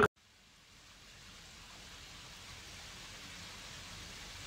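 Small fountain jets splashing into a shallow pool, a steady, quiet hiss of falling water that fades in about half a second in.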